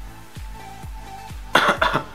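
Background electronic music with a steady kick-drum beat, then near the end two loud, short coughs from a man dusting powder blush over his upper lip with a brush held under his nose.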